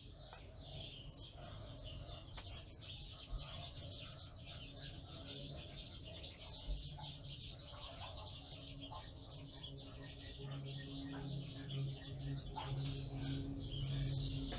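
Faint background of birds calling, with a low, repeated call in the last few seconds.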